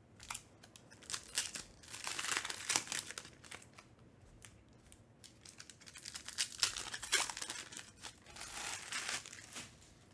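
Foil wrapper of a Panini Recon basketball card pack being torn open and crinkled, in two bouts of crackling a few seconds apart.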